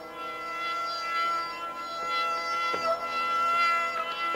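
Sarangi bowing one long, steady, high note in raag Kaunsi Kanada, its sympathetic strings ringing underneath. A couple of soft plucked notes sound about two and three seconds in.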